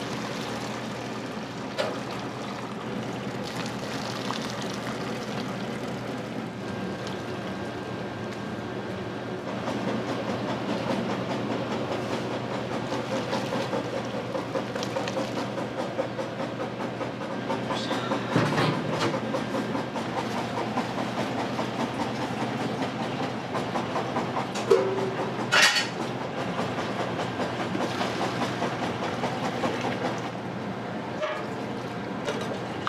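Hot soup stock with bonito flakes being poured from a large pot through a cloth strainer, a steady splashing pour that grows louder about ten seconds in. A few metal knocks come from the pot, two sharp ones late on.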